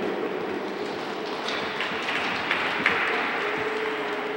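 Ice-rink noise without clear music: a steady, slowly fading hiss of the rink and onlookers, with a few sharp clicks around the middle.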